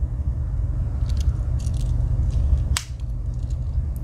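Metal file/saw of a Victorinox Swiss Army knife being folded shut: a few faint ticks of handling, then one sharp click as the tool snaps closed against its backspring, about three-quarters of the way through.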